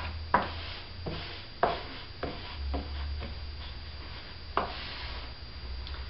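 Hands rubbing and pressing cotton fabric on a cardboard tube drum, with four light taps or knocks on the tube, over a steady low hum.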